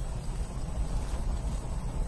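Steady low background rumble.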